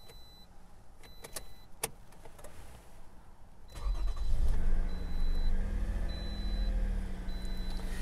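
Toyota car engine started with the key, heard from inside the cabin: a couple of clicks from the key in the ignition, then about four seconds in the engine catches. Its revs rise briefly and it settles into a steady idle.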